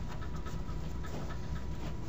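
Steady low hum and hiss of room tone with a thin high tone running through it, and a few faint light ticks.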